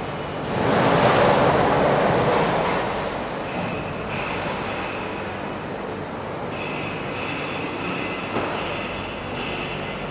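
Factory machinery on a harvester assembly line. A loud rushing, hiss-like noise lasts about two seconds near the start, followed by a steady high-pitched metallic squeal made of several held tones.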